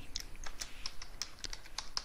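Computer keyboard keys clicking as a command is typed: a quick, uneven run of keystrokes, about five a second.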